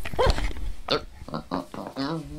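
A quick run of short squeaky, grunting cartoon voice noises, about five or six in two seconds, from animated cereal-square characters.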